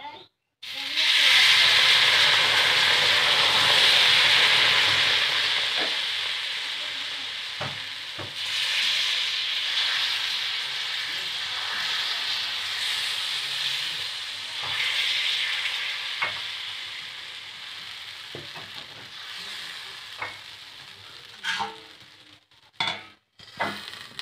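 Batter sizzling on a hot oiled iron griddle: a loud hiss as it hits the pan about a second in, fading slowly as it cooks, with a few taps of the spoon spreading it. Near the end there are several metal knocks as a steel plate is set over the griddle as a lid.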